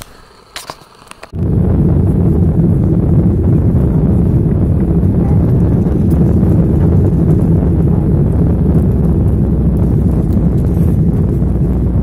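Steady, loud, low roar of a jet airliner's engines and rushing air heard inside the cabin, starting abruptly about a second in. A few faint clicks come just before it.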